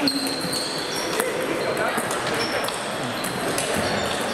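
Table tennis balls clicking off bats and tables from several games at once, with a sharp hit right at the start. The bounces give short high pings.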